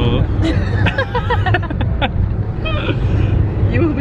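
Steady low rumble of a bus driving, heard from inside the cabin, with voices talking over it.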